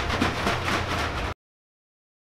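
Clattering handling sounds, short knocks and taps, as a plastic jug of liquid silicone mould rubber is tipped and poured into a cup on a digital scale, over a low steady hum. The sound cuts off abruptly a little over a second in, leaving dead silence.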